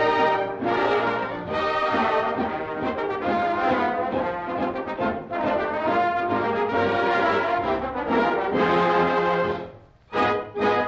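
Dance orchestra with a prominent brass section playing a radio show's opening theme, ending on a held chord that fades out just before the end. The sound is an old broadcast recording with no high treble.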